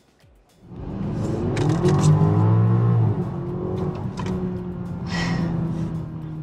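BMW XM's 4.4-litre twin-turbo V8 accelerating hard, heard from inside the cabin: the engine note comes in about a second in, climbs in pitch for a couple of seconds, then settles into a steady drone.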